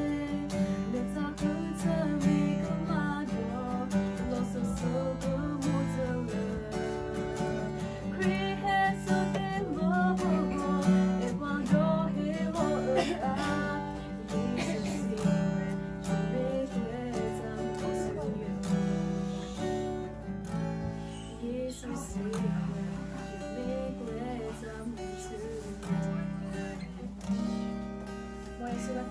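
Acoustic guitar strummed as accompaniment to a woman singing a song, the guitar chords steady underneath and the voice wavering above; the whole eases off in loudness toward the end.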